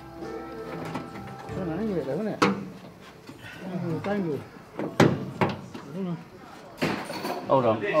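Background music with held notes fading out over the first two seconds, then indistinct voices, with a few sharp knocks at about two and a half, five and seven seconds in.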